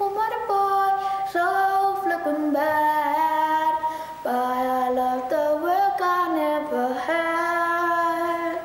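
A boy singing a song he made up, one voice holding long notes that step up and down in pitch.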